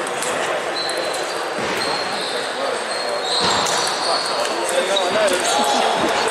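Scattered sharp clicks of table tennis balls striking tables and bats, from this and neighbouring tables, over a steady hubbub of voices in a large sports hall.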